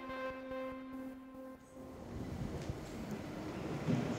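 A held background-music chord fades out over the first couple of seconds. After it comes a faint, steady noisy ambience that grows slightly louder near the end.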